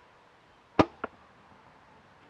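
Martin Xenon solo-cam compound bow shot with a finger release: one loud, sharp snap of the string and limbs as the arrow leaves, followed about a quarter second later by a fainter click, the arrow striking the target at 20 yards.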